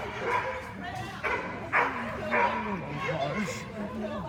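Dog barking excitedly in short sharp barks, three of them close together in the middle, with a person's voice between them.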